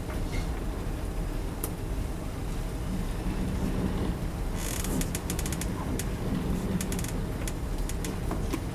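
Dry-erase marker writing on a whiteboard, starting about halfway through: one longer stroke, then a quick run of short strokes and taps. A steady low room hum runs underneath.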